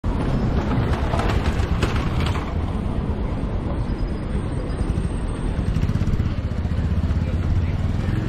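Street traffic ambience: a steady low rumble as a car and a delivery motorbike move slowly along a paved street.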